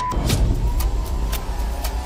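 Television test-card sound effect: a steady high beep, strong only briefly at the start and then held faintly, over a deep rumble and crackling static.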